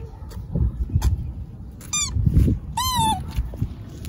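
A toddler lets out two short, high-pitched squeals, about two and three seconds in, the second rising then falling. Low rumbling and a few soft knocks run underneath.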